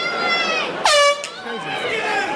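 A short, loud air horn blast about a second in, marking the start of the bout, over crowd chatter and a held shout.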